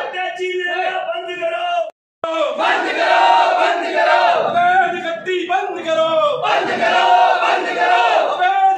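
A crowd of men chanting loudly in unison, phrase after phrase, with a brief drop to silence about two seconds in.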